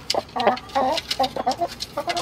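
Hens on the roost clucking in a string of short, quick notes as they settle for the night, with a few sharp clicks among them.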